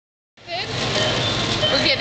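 Supermarket checkout ambience: a babble of voices over a steady low hum, starting abruptly a moment in after a short silence.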